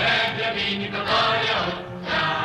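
A choir singing with instrumental accompaniment.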